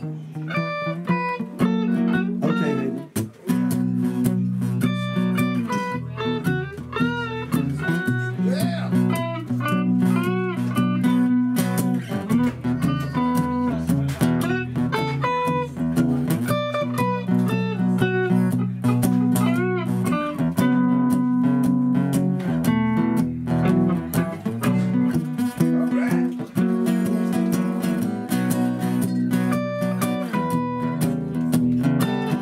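Stratocaster-style electric guitar playing a slow-blues solo: single-note lines with frequent string bends over a steady guitar chord accompaniment.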